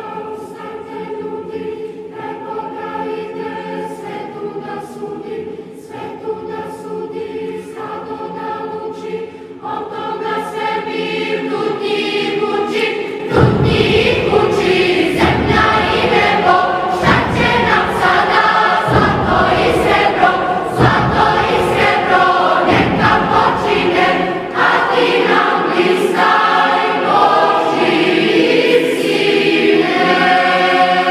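A choir singing slow held chords; about thirteen seconds in the music swells, louder and fuller, with a deep accompaniment underneath.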